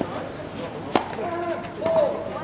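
A tennis serve: the racket strikes the ball once, a single sharp crack about a second in. Voices talking follow.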